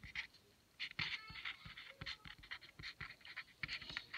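Felt-tip marker writing on paper: a string of faint, short scratchy strokes and light taps.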